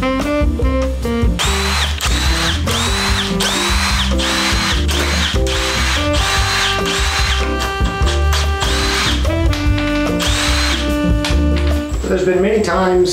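Cordless drill run in a quick series of about a dozen short bursts, each a brief spin-up whine that cuts off, with background music underneath.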